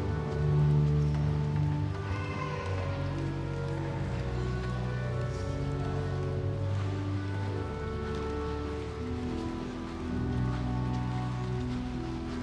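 Church organ playing slow, sustained chords over held low bass notes.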